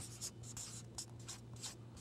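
Felt-tip marker writing: a series of short, faint strokes of the tip on the writing surface as letters are written.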